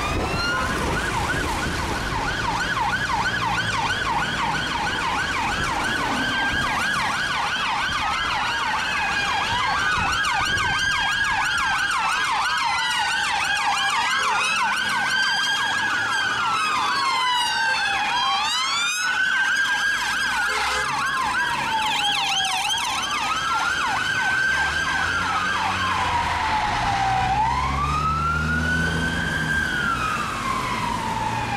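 Several police car sirens sounding together as an armed escort convoy passes. The sirens run out of step: fast yelps over the first part, then slow rising-and-falling wails that overlap. Engine noise from the passing vehicles grows underneath near the end.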